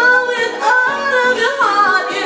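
A woman singing a drawn-out melodic run into a microphone, her pitch sliding and stepping between notes.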